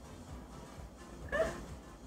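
A single short, high-pitched vocal sound about a second and a half in, over a faint background.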